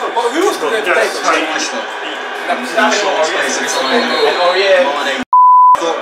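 Room chatter from a group of men, then near the end the sound cuts out and is replaced by a single loud, steady, high-pitched beep lasting about half a second: an edited-in censor bleep covering a word.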